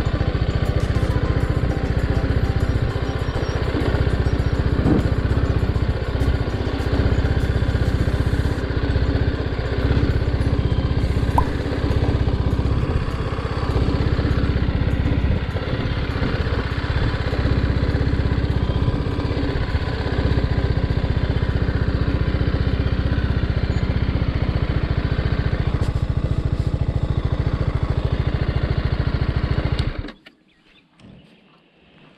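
BMW G310GS single-cylinder motorcycle engine running steadily while the bike is ridden over a dirt track, mixed with background music.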